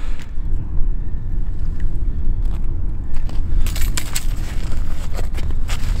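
Wind buffeting the microphone, a loud steady low rumble, with a cluster of sharp crackling clicks a little past halfway and a few more scattered, from handling the tip-up at the ice hole.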